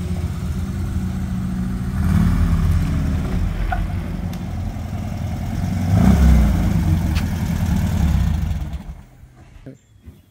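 Air-cooled 1600 cc VW flat-four engine of a dune buggy running as the buggy drives up and pulls in, swelling louder about two seconds in and again around six seconds, then stopping about nine seconds in.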